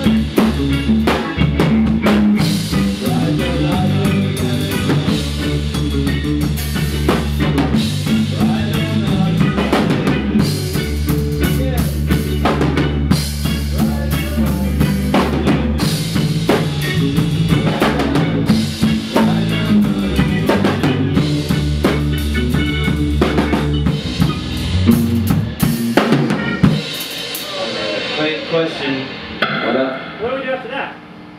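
Ska band playing a tune together at rehearsal: drum kit, bass, electric guitar and keyboards, heard from right behind the drums, which are the loudest part. In the last few seconds the bass drops out and the playing thins out and winds down.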